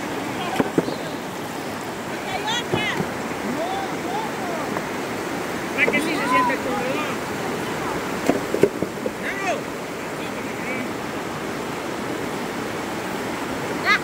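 Shallow river water rushing steadily over and between rocks. Voices call out now and then, with a few sharp knocks.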